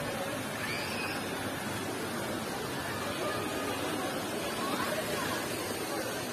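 Indistinct chatter of people nearby over a steady rush of running water from a small stream.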